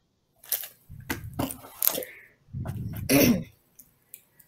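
A beatboxer starting up: a few sharp mouth clicks at uneven spacing, then a longer throaty, breathy sound near the end, not yet a steady beat.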